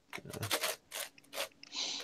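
Moyu 15x15 puzzle cube being turned by hand: its plastic layers clack and scrape in a quick, irregular run of clicks.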